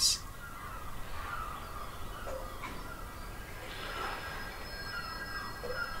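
Faint ambient sound bed: steady high drone tones with a softly wavering pitched line beneath them, and two higher tones joining a little before the middle.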